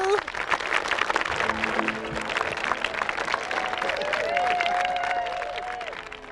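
A seated crowd applauding, many hands clapping densely, with cheering voices rising over the clapping in the second half.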